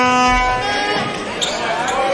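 Volleyball being struck during a rally in an indoor arena, the hits echoing in the hall. A steady held musical note, horn-like, sounds over it and stops about a second in, followed by voices.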